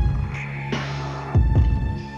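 Background music with a slow, deep beat about every one and a half seconds over a steady low drone.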